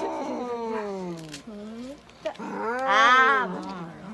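A cat yowls twice in long drawn-out calls. The first falls in pitch; the second is louder and rises, then falls. These are cries of distress at being held down on the exam table.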